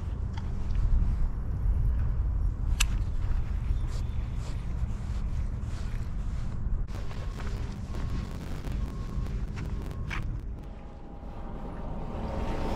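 Wind buffeting a small action-camera microphone: a steady low rumble, with a few faint sharp clicks scattered through it.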